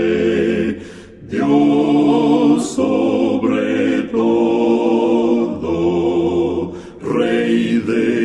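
Male vocal quartet singing a slow hymn in close harmony: long held chords, with short breaks between phrases about a second in and again near the end.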